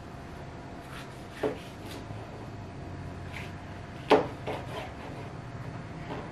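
Kitchen knife cutting the peel off a lemon on a cutting board, with a few short knocks of the blade against the board, the loudest about four seconds in.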